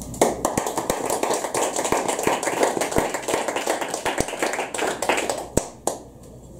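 Audience applauding after a poem, a dense run of clapping that starts almost at once and stops just before the end.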